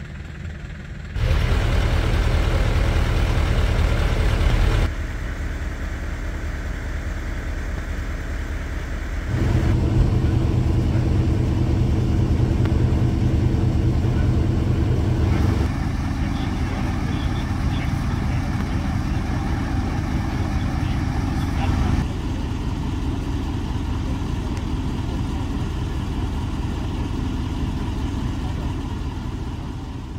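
Engines of parked emergency vehicles idling, a steady low hum that changes abruptly in level several times.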